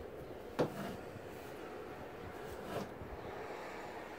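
Faint rubbing and handling noise of a steel fish tape being drawn through an electrical box in drywall, with one short knock about half a second in.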